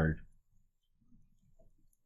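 Faint, scattered taps of a stylus writing on a touchscreen.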